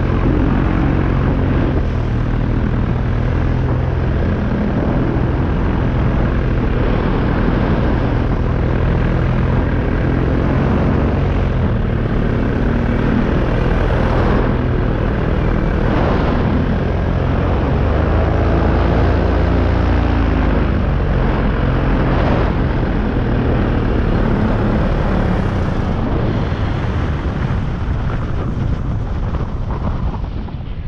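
Paramotor engine and propeller running steadily in flight, mixed with wind rushing over the microphone. The engine note wavers about two-thirds of the way through, and the sound eases off near the end as the pilot touches down.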